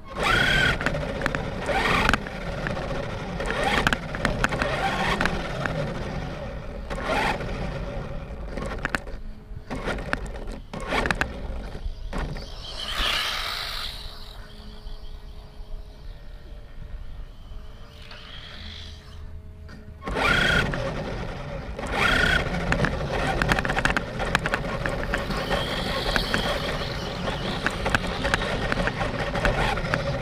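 Onboard sound of a battery-powered RC car driving on a concrete path: motor noise and rattling over the rough surface. It drops away about 14 seconds in and picks up again about 20 seconds in, the car stopping and going again, which the owner blames on a failing battery or motor.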